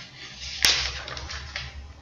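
A single sharp click about two-thirds of a second in, over faint room noise.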